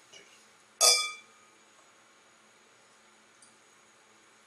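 Two stemmed beer glasses clinking once in a toast, about a second in, with a short ringing tone that dies away quickly.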